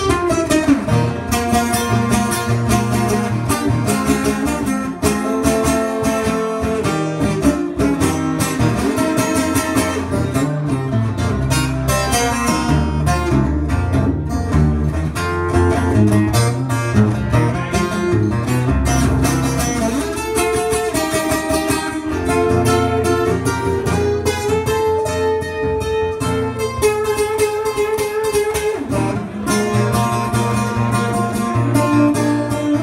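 Acoustic guitar played solo, an instrumental passage of picked notes and strummed chords with no singing.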